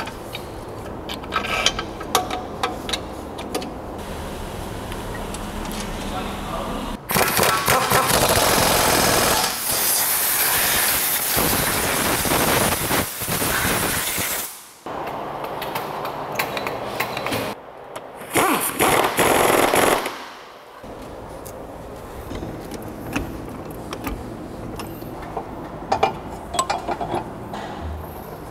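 Pneumatic impact wrench working rear suspension bolts, in a long burst from about seven seconds in and a shorter one around eighteen seconds in. Between the bursts come scattered metallic clinks and knocks of tools and parts.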